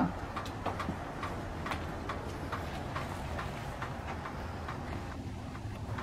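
Light, regular clicking steps across a flagstone patio, about two to three a second, over a steady low outdoor rumble.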